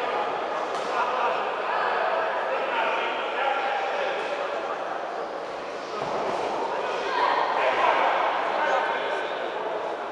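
Crowd of spectators shouting and calling out during a boxing bout, many voices at once, swelling louder about seven seconds in.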